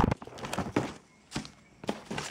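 A sneaker being handled in its cardboard shoebox lined with tissue paper: a sharp knock at the start, then a few soft knocks and paper rustles, with short quiet gaps in the second half.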